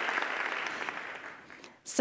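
Audience applauding, the clapping dying away over the last half second.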